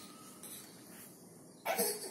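A single short cough near the end.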